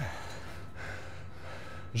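A runner breathing hard close to the microphone, a steady noisy rush of breath with short dips, while pausing mid-run.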